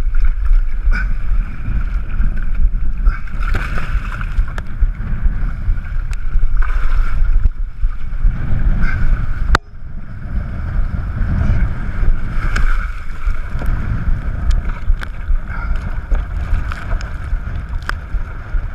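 Wind buffeting a GoPro's microphone with water splashing and sloshing around a windsurf board and sail in the water, during a waterstart attempt. A sharp knock comes about halfway through, after which the sound is briefly quieter.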